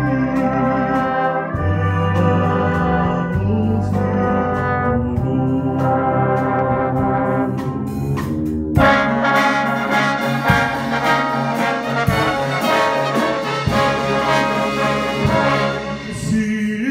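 Brass band of trombones, euphoniums and tubas playing held chords. About nine seconds in, the sound changes abruptly to a fuller, brighter brass passage with occasional sharp beats.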